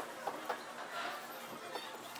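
Quiet restaurant dining-room background: a low murmur of room noise with a few faint, scattered clicks and clinks.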